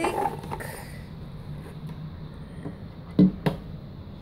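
Handling noise of a plastic light stick being lifted out of its cardboard box: a brief rustle of packaging, then quiet scraping, then two sharp knocks about three seconds in, a third of a second apart.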